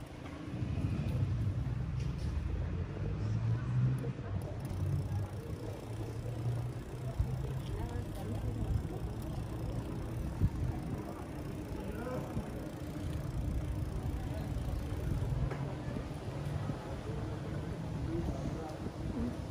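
Outdoor street ambience on a pedestrian walkway: passers-by talking indistinctly over a steady low rumble.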